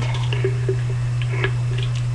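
Light clicks and taps of an empty aluminium pop can and steel scissors being handled as the scissor points are set against the can's top, over a steady low electrical hum.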